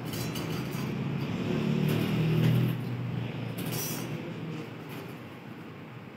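A passing motor vehicle's engine hum swells, loudest about two and a half seconds in, then fades. Light clinks of a metal spoon come near the start and again about four seconds in.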